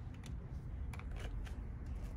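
Quiet room tone with a steady low hum and a few faint light taps about a second in, from footsteps on the studio floor.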